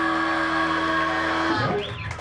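Distorted electric guitars and bass holding a ringing final chord that cuts off about one and a half seconds in, followed by a short squealing glide in pitch as the song ends.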